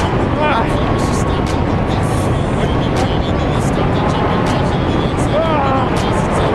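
Wind rushing over a camera microphone during a tandem parachute descent under canopy, a loud, steady rush. Music with a wavering voice is faintly heard underneath, clearest near the end.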